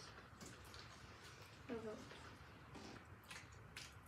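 Near silence: faint mouth clicks and chewing from people eating soft jelly doughnuts, with a short spoken "oh" a little under halfway through.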